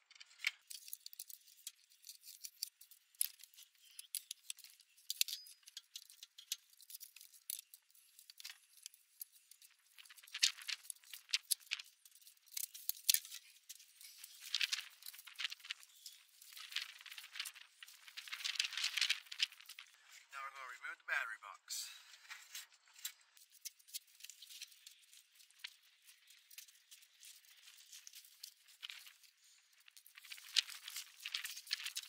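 Scattered clicks, clinks and rattles of hand work on battery cable terminals and a plastic battery box while an old lead-acid trailer battery is disconnected and lifted out.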